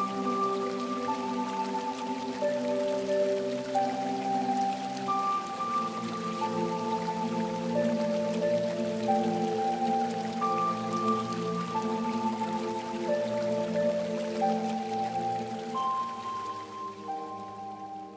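Calm background music: a slow melody of long held notes over sustained chords, with a running-water sound mixed in. It fades out near the end.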